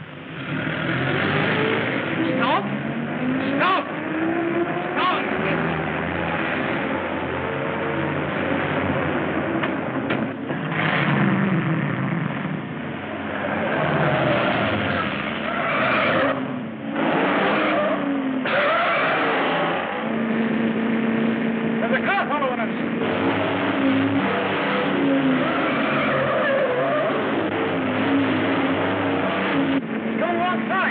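Cars being driven hard, engines running with tyres squealing and skidding several times.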